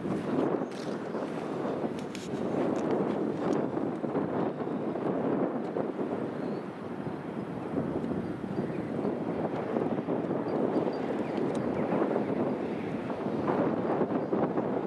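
Wind buffeting an outdoor microphone in a steady, uneven rush, with a few faint clicks.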